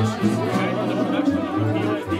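Live band music played in a restaurant, with steady held notes, and diners chatting over it.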